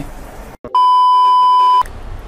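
A single steady electronic beep, one pure high tone about a second long, starting a little before the middle. It is an edit sound effect marking a time skip of a few hours.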